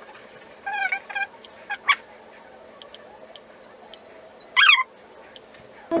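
A pet animal's short, high-pitched calls: two quick ones about a second in, then a louder one near the end, with a couple of light clicks between.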